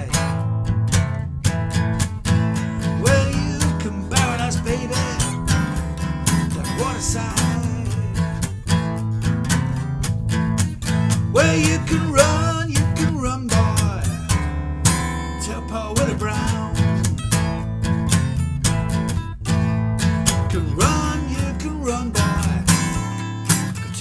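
Solo acoustic guitar playing a blues instrumental break: picked treble notes over a steady bass line.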